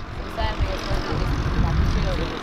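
Loud steady rushing noise with a deep rumble underneath, setting in at the start: a passing vehicle.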